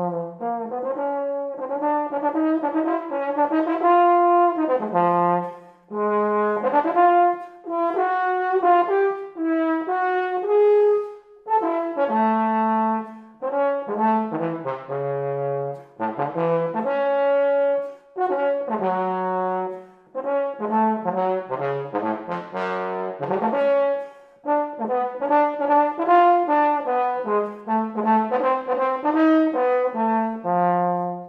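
Solo bass trombone playing an unaccompanied melodic line: one note at a time, in phrases broken by short breathing pauses, moving between low and middle register.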